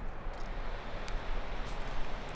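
Steady whoosh of moving air, with a low rumble and a few faint clicks.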